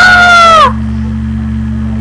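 A loud, high-pitched held cry in a person's voice, one long note lasting about two-thirds of a second that drops in pitch at its end. A steady low electrical hum sits underneath.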